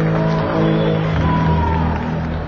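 Amplified electric instruments holding long, steady notes. A second, lower note joins a little past a second in. This is typical of the band tuning up and testing before the first song.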